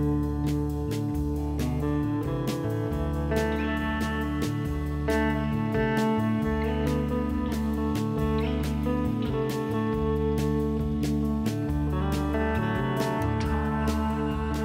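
Background music with a steady beat and a bass line that steps from note to note.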